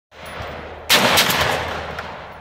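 12-gauge pump-action shotgun fired once about a second in, the blast trailing off in a long echo.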